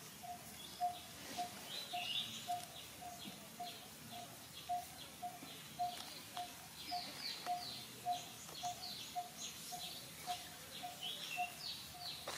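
Birds calling: one bird repeats a single short, mid-pitched note evenly, about twice a second, while other birds add quick high chirps and falling notes that become busier about halfway through.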